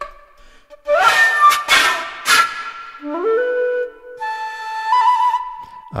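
Sampled dongxiao, the Chinese end-blown bamboo flute, from the Ample Sound Dongxiao virtual instrument, playing special effects: about a second in, a few breathy, airy blasts with pitched tones in them, then a quick rising run into a held note and a higher note that wavers into a trill near the end.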